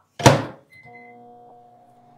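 Microwave oven door shut with a loud thunk, a short keypad beep, then the oven starting up and running with a steady electric hum. It is heating chocolate to melt it in short bursts.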